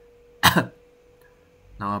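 A man clearing his throat once, a short sharp sound about half a second in, before his speech resumes near the end.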